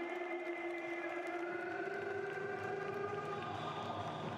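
A fan's noisemaker horn in the arena holds one long, steady note that cuts off a little over three seconds in. Fainter, higher whistle-like tones and steady crowd noise run beneath it.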